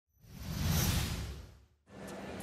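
Whoosh sound effect of a video intro ident: it swells up with a deep rumble under a high shimmer, peaks about a second in and fades away. Right at the end it cuts to steady stadium ambience.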